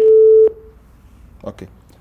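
Telephone busy tone on a phone-in line, the signal that the call has dropped: one loud, steady beep of about half a second that stops abruptly.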